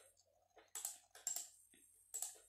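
Faint, scattered clicks of typing on a keyboard: a few separate keystrokes.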